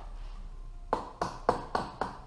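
Lightweight rubber mallet tapping the finned aluminium cylinder block of a Honda CBX 1000 six-cylinder engine, about four light knocks a second starting about a second in. The taps work the stuck cylinder block evenly up its studs off the crankcase.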